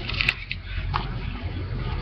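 A man puffing on a briar tobacco pipe: a few soft lip and stem smacks and clicks over low room hum.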